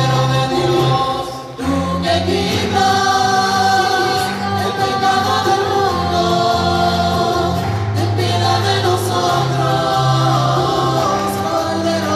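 Church choir singing a liturgical hymn over instrumental accompaniment with held bass notes, briefly dipping about a second and a half in.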